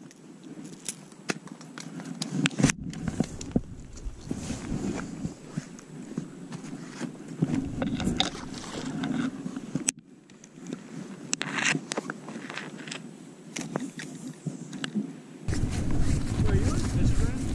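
Rustling, scraping and scattered clicks from an angler's body-worn camera and fishing gear being handled, with footsteps. The sound changes abruptly several times.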